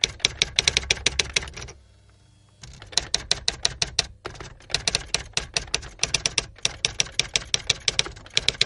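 Typewriter sound effect: rapid key strikes, about ten a second, in runs broken by a pause of about a second near two seconds in.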